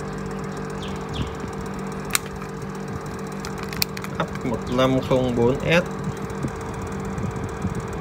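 Steady machine hum of running workbench equipment, with two sharp clicks a couple of seconds apart.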